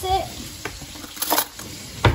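A brief clatter about halfway through, over a faint steady crackling hiss.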